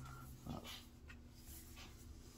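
Very quiet room with faint soft handling sounds as a laptop is moved about over its cardboard box, the clearest about half a second in.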